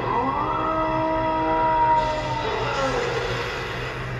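A long drawn-out cry or roar from the anime's soundtrack. It rises in pitch at the start, holds one steady pitch for about two seconds, then slides down and fades about three seconds in.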